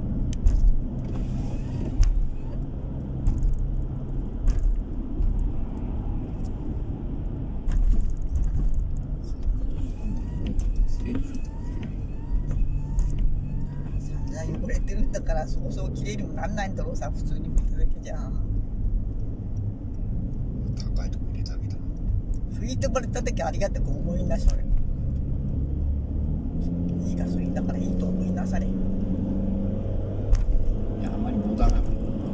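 Car engine and road noise heard from inside the cabin while driving, a steady low rumble. Near the end the engine note climbs as the car speeds up.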